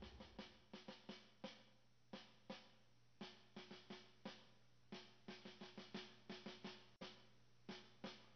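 Faint music: sparse, uneven drum-kit and snare hits, each dying away quickly, over a low steady hum.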